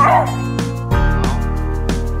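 A beagle gives one short bark right at the start, over steady upbeat background music.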